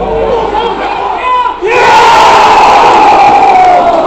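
Football stadium crowd shouting, then a sudden loud collective roar about halfway through that slides down in pitch over about two seconds: the crowd's reaction as a chance from a free kick hits the post.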